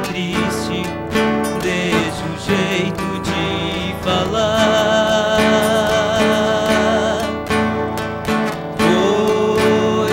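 Sertanejo duet: two male voices singing together over two strummed acoustic guitars. About four seconds in, the voices hold one long note with vibrato for some three seconds, and a new note slides up near the end.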